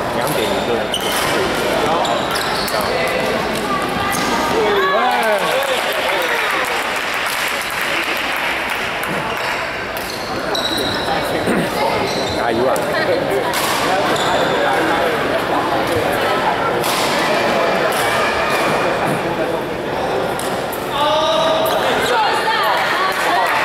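Badminton hall ambience: rackets sharply striking shuttlecocks on several courts, with players' voices calling out, echoing in a large hall.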